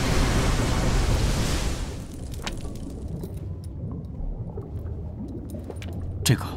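Soundtrack noise effect: a loud, even rushing for about two seconds that drops off to a quieter low rumble with scattered faint clicks.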